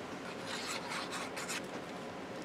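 The plastic nozzle of a liquid glue bottle dragging across paper as glue is laid down: a soft, scratchy rubbing in several short strokes.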